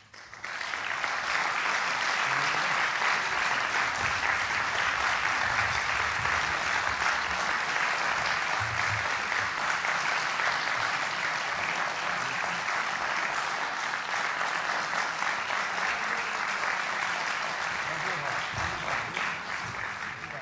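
Audience applauding, breaking out suddenly about half a second in and holding steady.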